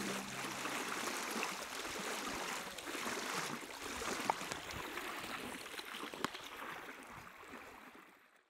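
Water lapping and gurgling in a steady wash, with two small knocks, fading out near the end. The last held notes of music die away in the first second.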